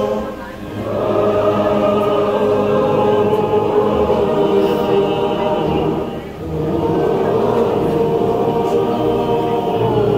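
A large congregation singing a hymn together, accompanied by wind instruments including saxophone and tuba. The sound dips briefly between phrases, about half a second in and again just after six seconds.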